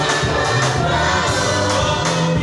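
Amplified gospel singing: a lead voice and other voices singing together through microphones and a PA over instrumental accompaniment with a steady bass and a regular beat.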